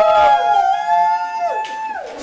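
Several young women howling together in long, high, held notes. Their voices rise into the howl and then drop away one after another near the end.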